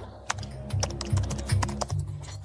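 Computer-keyboard typing sound effect, quick irregular key clicks about six or seven a second, over a music bed with a low, pulsing bass.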